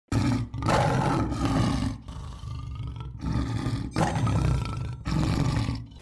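Lion roaring: a run of deep roars and growls with short breaks between them, loudest in the first two seconds and again near the end.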